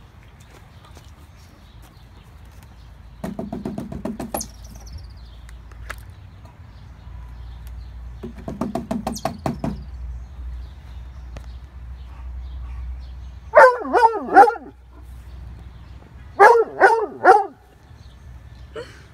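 Redtick coonhound barking in two quick groups of three loud barks near the end. Earlier come two stretches of rapid knocking, about a second each, from the gutter downspout being tapped to flush out a chipmunk hiding inside.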